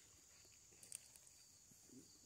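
Near silence: faint outdoor background with a faint, steady high tone, and one soft click about a second in.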